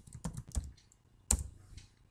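Computer keyboard being typed on: a few quick keystrokes in the first half second or so, then a single louder click about a second and a half in.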